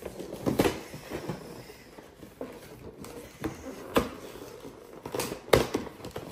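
Scattered knocks, clicks and rustles of gingerbread-house kit boxes and packaging being handled and opened on a table, with a quick cluster of sharp knocks near the end.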